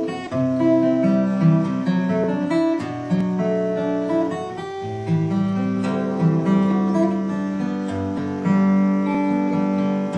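Solo acoustic guitar in DADGAD tuning playing a continuous passage. Open strings ring on under fretted notes, so each note sustains and overlaps the next.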